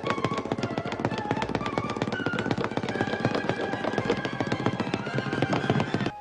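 Orchestral film-score music in a cartoonish fight style: a fast, rattling run of percussive hits over held notes. It cuts off sharply at the end.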